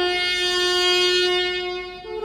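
Piri, the Korean bamboo double-reed pipe, holding one long steady note with a bright, reedy tone. The note fades slightly near the end.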